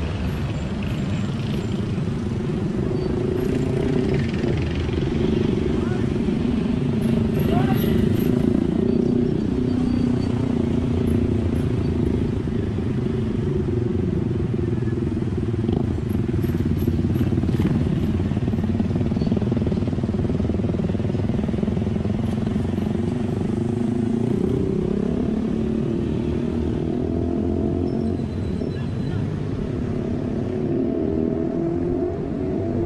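Small motorcycle engines running steadily in close traffic, their pitch wavering as the bikes ride along together, over a wash of road and wind noise.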